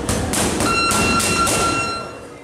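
Boxing gloves smacking into focus mitts in a rapid, uneven series of punches. About two-thirds of a second in, a steady high-pitched tone starts and holds under the blows.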